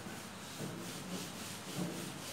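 Faint rubbing of an eraser wiping marker writing off a whiteboard in repeated back-and-forth strokes.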